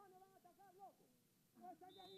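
Faint, distant shouted calls from footballers on the pitch, with one calling "dale" near the end.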